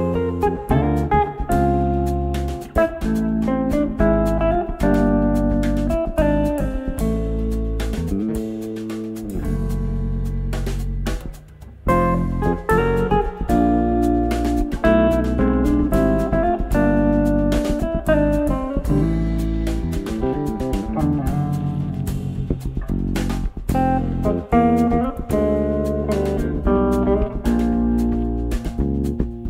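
Jazz-funk fusion trio playing an instrumental: a red semi-hollow electric guitar plays the melody over electric bass and a drum kit. About twelve seconds in there is a short break before the band comes back in.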